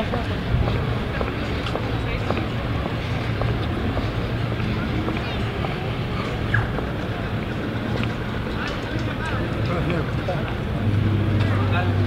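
Street crowd noise: a babble of many distant voices over the steady low hum of vehicle engines. The engine hum grows louder near the end.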